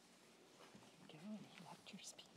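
Near silence, then from a little under a second in, a few faint, quietly spoken words, as in a low exchange between two people away from the microphone.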